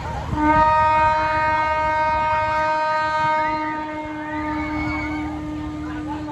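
A horn at the fairground sounds one long, steady note. It starts about half a second in at its loudest and fades after about five seconds, leaving a lower steady tone going on.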